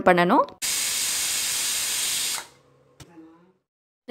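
Premier pressure cooker whistling: steam hisses out under the weight in one steady burst of nearly two seconds, then stops sharply. The whistle is the sign that the cooker is at full pressure, and the cook counts two of them before opening it.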